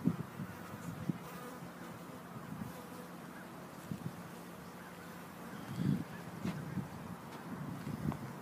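A mass of honey bees buzzing in a steady drone around an open hive as a newly installed package colony settles in. A few soft knocks come through about a second in, about four seconds in and near six seconds.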